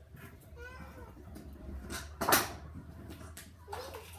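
A young child's voice making short sounds, with a loud, brief noise a little past two seconds in and another near the end.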